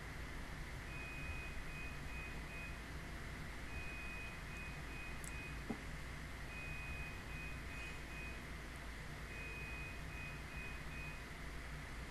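Faint high-pitched electronic beeping: a long beep followed by three short ones, the pattern repeating four times about every three seconds, over a low steady hum.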